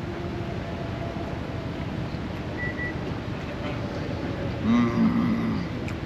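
Steady outdoor background rumble of traffic, with a man's short closed-mouth 'mmm' about five seconds in as he chews.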